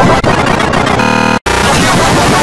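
Loud, heavily distorted cacophony of processed cartoon soundtrack audio. A buzzy, stuttering tone comes in about halfway through and cuts off in a sudden brief dropout to silence.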